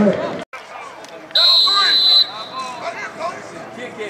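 Referee's whistle blown once, a steady shrill blast of just under a second starting about a second and a half in, over a murmur of voices and shouts from the sideline and stands.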